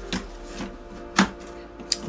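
A few short knocks and clicks as the large plastic torso of a Jurassic World Dominion Dreadnoughtus toy figure is handled. The sharpest knock comes a little past the middle. Faint background music plays under it.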